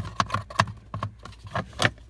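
Irregular clicks and small rattles of a hand tool working a screw in a plastic under-dash trim panel, with a sharper knock near the end.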